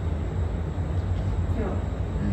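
A steady low hum with a faint noisy haze over it, and one short spoken word near the end.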